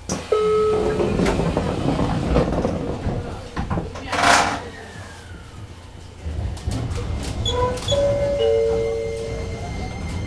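Doors of a JR Kyushu 815 series electric train sliding shut with a thud at the start, then a short hiss of air a little after four seconds. From about six seconds a low rumble and a couple of steady tones build as the train starts to pull away from the station.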